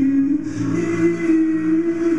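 Live-looped vocal music: a low sung note held steady, with a second, lower note that pulses in and out, entering about half a second in.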